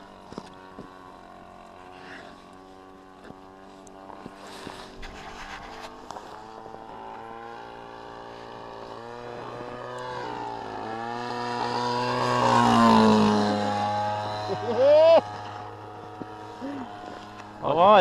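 A model plane's 45cc two-stroke Husqvarna chainsaw engine running at flying speed, a steady buzzing drone that grows louder as the plane comes closer, is loudest about twelve to thirteen seconds in, and then fades as it passes. A brief loud voice cuts in near the end.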